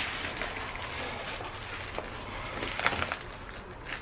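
Bubble-wrapped part being handled, the plastic wrap rustling faintly, with a few small crinkles about three seconds in.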